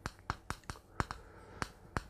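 Chalk tapping against a chalkboard while a word is being written: about a dozen sharp, uneven taps.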